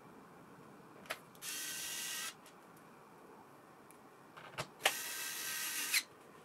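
Cordless electric screwdriver driving screws into a laptop's underside, its motor whining in two short runs: one about a second and a half in lasting under a second, the other from about five seconds in. Sharp clicks come just before each run as the bit engages the screw.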